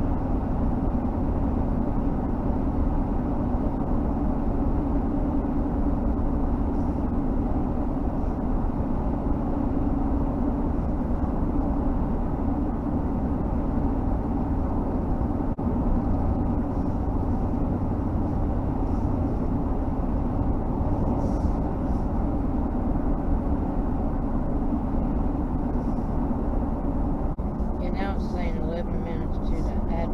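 Car driving at steady speed on a paved road, heard from inside the cabin: a steady low rumble of tyres and engine. Near the end, a few seconds of a faint voice-like sound with shifting pitch rides over it.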